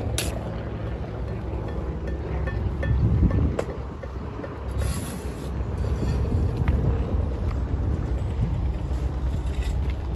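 A steady low engine drone from site machinery, with a few light knocks.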